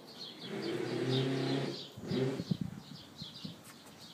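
Siberian husky vocalizing in play: one long, steady-pitched call starting about half a second in and lasting over a second, then a shorter call mixed with a few knocks. Small birds chirp faintly and repeatedly in the background.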